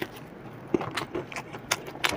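Close-miked eating: a scatter of short crisp crunches and mouth clicks, uneven in timing, as a fried chilli fritter (mirchi pakoda) is chewed.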